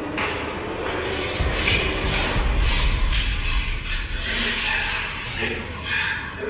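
Muffled, indistinct voices with background music. A low rumble swells about a second and a half in and fades after about three and a half seconds.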